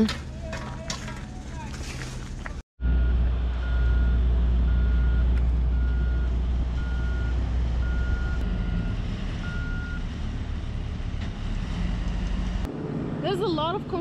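Heavy road-building machinery running with a strong, steady low diesel rumble, while a reversing alarm beeps about once a second for several seconds and then stops.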